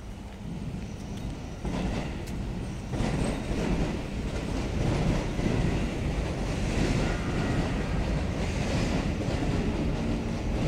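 A train running past, growing louder about three seconds in and staying loud.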